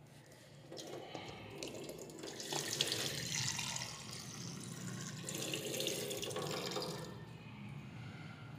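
Water running from a drinking-water cooler's tap into a plastic cup. It starts under a second in, is loudest in the middle, and eases off near the end.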